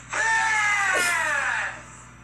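A single loud scream, about a second and a half long, sliding down in pitch as it goes.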